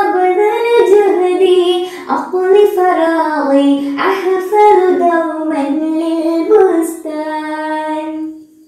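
A girl singing an Arabic children's song solo, ending the song on a long held note near the end.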